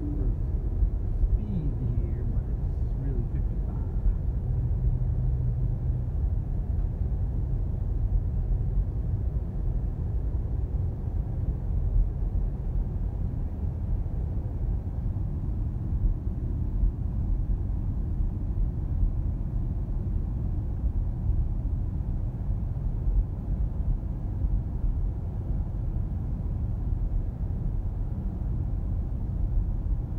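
Steady low rumble of tyre and road noise inside the cabin of a Tesla Model S 85D cruising at about 60 mph, with no engine sound.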